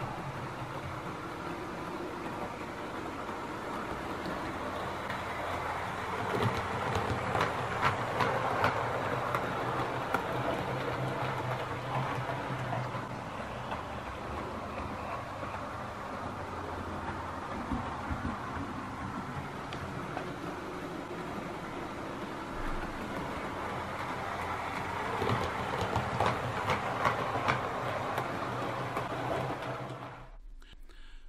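Dapol OO gauge class 73 model locomotive running on layout track: a steady motor and gear hum with wheels clicking over the rail joints, growing louder twice, about six seconds in and again near the end. It runs freely after its gear chain was cleaned of thick grease and relubricated.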